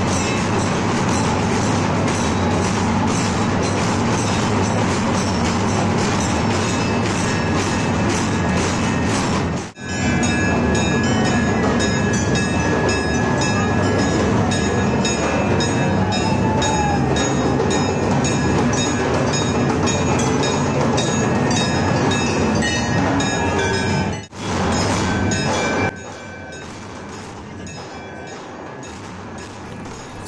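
Festival din of a large crowd with dhol drums beating a steady rhythm of a few strokes a second, over sustained ringing high tones. The sound breaks off twice for a moment and is quieter over the last few seconds.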